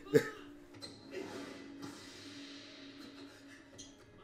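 Faint music: one low note held steadily for about three seconds, after a brief snatch of voice at the start.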